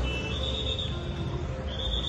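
Outdoor campus ambience: a steady low rumble of wind and distant traffic, with a thin high whistling tone that comes and goes in short stretches.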